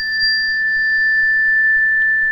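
A chime held close to the microphone rings with a single steady high pitch, between 1500 and 2000 Hz. A fainter, higher overtone fades out near the end.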